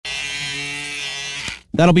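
Electric hair clippers buzzing steadily, then cutting off suddenly about one and a half seconds in, as the haircut is finished.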